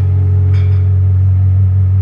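Acoustic guitar chord left ringing between sung lines, loud and steady, its low strings strongest.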